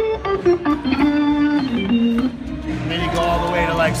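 Hammond C3 tonewheel organ played with the 16-foot drawbar and a few others pulled out, giving held notes and chords with a full, organ-pipe-like tone. The notes move from one to the next, with a low line stepping down about two seconds in.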